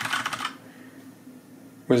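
A Rapoo V500 mechanical keyboard being typed on: a quick run of key clicks that stops about half a second in.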